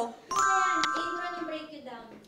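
A bright, bell-like ding that starts suddenly about a third of a second in and rings on, slowly fading, for over a second, with a voice underneath.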